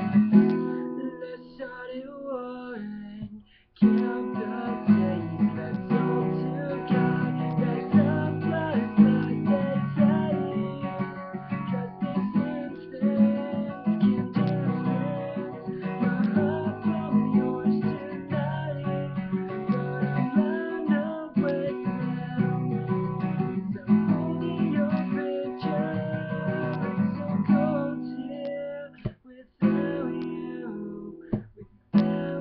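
Acoustic guitar strummed as a song accompaniment, played with one string missing after a string broke, with a man singing over it at times. The playing breaks off briefly about three and a half seconds in.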